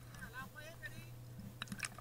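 Faint, distant voices of people talking, with a few sharp clicks near the end, over a steady low hum.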